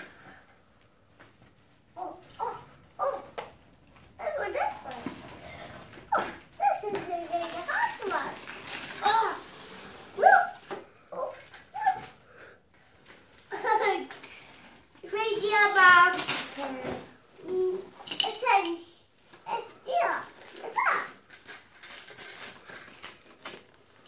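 A young child talking and vocalizing in short, high-pitched bursts while wrapping paper rustles and tears as a present is unwrapped.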